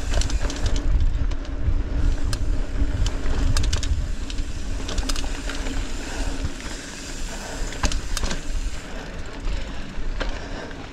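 Mountain bike ridden along a dirt singletrack: wind rumbling over the camera microphone, with scattered sharp clicks and rattles from the bike over the rough trail.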